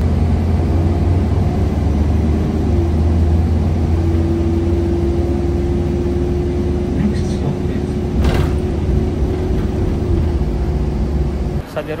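Low rumble of a moving road vehicle heard from inside the cabin, with a steady droning tone through the middle and a single click about eight seconds in. The rumble cuts off suddenly near the end.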